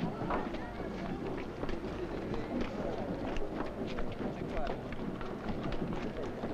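Indistinct background voices mixed with many short clicks and knocks.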